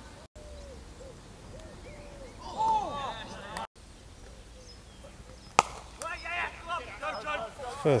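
A single sharp crack of a cricket bat striking the ball, a little past halfway through. Distant shouts from players on the field come before and after it.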